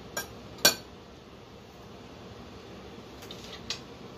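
A metal utensil clinking against a dish: a soft click, then a sharp clink about half a second in, and a couple of faint clicks near the end.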